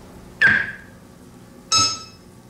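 Electronic synthesizer playing sparse, sharp struck tones, two of them, each dying away within about half a second; the second is brighter and higher.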